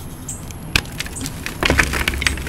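Reformed gym chalk cracking and crumbling as it is squeezed by hand: a single sharp crack about three-quarters of a second in, then a quick run of crisp crunches near the end.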